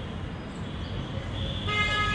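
Steady low rumble of city traffic, with a vehicle horn starting to honk near the end.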